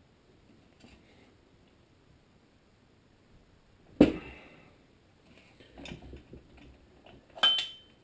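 Hand tools on a small engine's flywheel nut: one sharp metal clunk about halfway, a few lighter knocks, then a ringing metallic clank near the end as the socket wrench comes off the nut.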